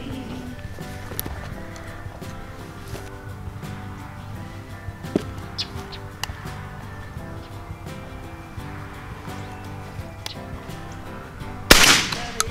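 Background music plays throughout. Just before the end, a single loud shotgun shot rings out, much louder than the music.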